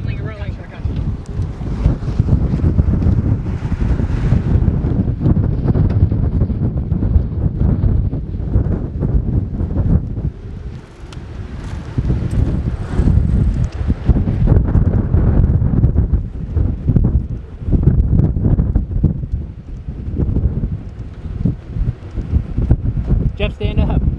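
Gusty storm wind buffeting the microphone: a rough low rumble that surges and eases, with a brief lull about halfway through.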